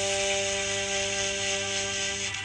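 Saxophone holding one long, steady note.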